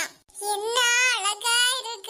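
A high-pitched, child-like cartoon character voice in drawn-out, wavering phrases, with a short break about a quarter second in.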